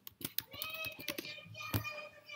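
Computer keyboard keys being tapped, a few quick keystrokes, finishing the entry of a password, then a single faint click near the end.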